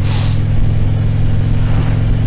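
Harley-Davidson V-twin motorcycle engine running steadily while cruising, with wind noise over the bike.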